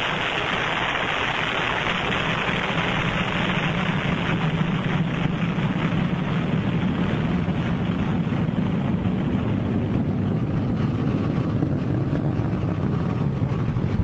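Steady noise of the Delta IV Heavy's three RS-68 engines during ascent, an even rush with a low rumble that grows stronger after a few seconds.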